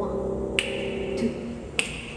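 Finger snaps keeping a steady beat, three crisp snaps about 0.6 s apart. Under them a held piano chord fades away, and a few soft low bass notes come in.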